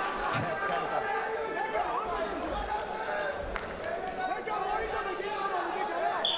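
Arena crowd in a large indoor hall, many voices chattering and calling out at once at a steady level, with a few faint knocks.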